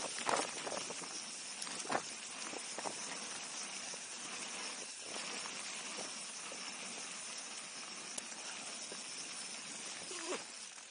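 Mountain bike rolling fast down a dirt forest trail: a steady rush of tyre and riding noise on the bike-mounted camera, with a few sharp knocks from the bike over bumps in the first two seconds.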